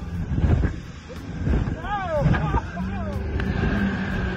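Johnson 90 V4 two-stroke outboard running at speed, a dense low rumble mixed with wind buffeting the microphone. About two seconds in, a person gives a few short wordless cries that rise and fall in pitch.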